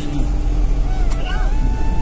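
A car's engine idling, a low steady rumble heard from inside the cabin.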